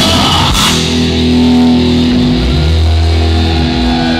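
Live rock band playing loud: drums and cymbals crash in the first second, then the electric guitars and bass hold a steady ringing chord over a deep bass note.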